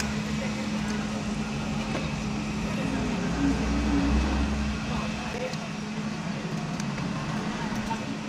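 Road traffic noise heard from inside a car cabin: a steady low hum with a rumble that swells for a second or so midway, as if a vehicle passes.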